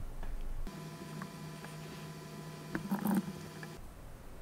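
Faint background with a steady electrical-sounding hum of several fixed tones, starting and stopping abruptly. A few soft clicks fall in the middle.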